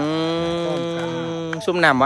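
A person's long, drawn-out vowel sound (an 'uuh') held at one steady pitch for about a second and a half, followed by speech near the end.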